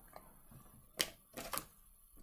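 Tarot cards being handled and drawn from the deck: a sharp card snap about a second in, then a short sound of cards sliding.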